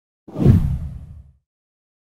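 A single whoosh sound effect for an on-screen transition, with a deep low end, swelling in quickly and fading out within about a second.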